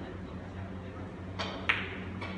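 Two sharp clicks of carom billiard balls about a second and a half in, the second the louder: the cue tip striking the cue ball and the ball then hitting another ball.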